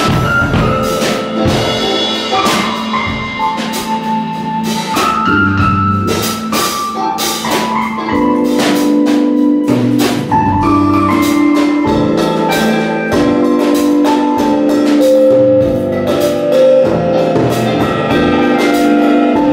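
Live band music with no vocals: a drum kit with cymbal strikes under a pitched melodic instrument playing held notes that step up and down.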